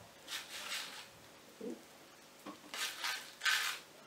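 A small paper packet of candy being shaken upside down over a plate, its contents rattling out in a few short bursts, the last near the end being the loudest.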